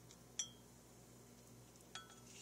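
A metal spoon clinks once against a glass container with a short bright ring about half a second in, and taps it again faintly near the end. Between the clinks there is near silence over a low steady hum.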